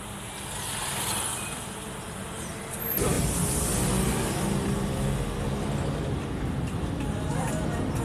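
Car engine and road noise heard from inside the cabin while driving slowly in town traffic, a steady low rumble that gets clearly louder about three seconds in.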